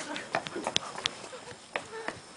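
Kitchen utensils and dishes clinking and knocking: a run of short, irregular clicks and taps from cooking at a stove.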